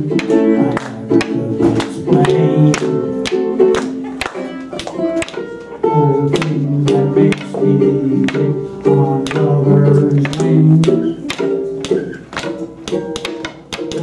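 Live band playing an instrumental break: guitar notes over a steady low line, with sharp percussive clicks keeping the beat.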